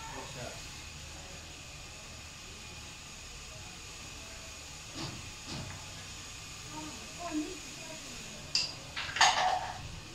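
Carrom striker shots: sharp clacks of the striker hitting carrom men and the board's wooden frame. Two come about halfway through, and a louder cluster of clacks near the end.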